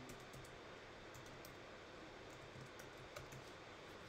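Faint typing on a computer keyboard: irregular, light keystrokes over a low background hiss.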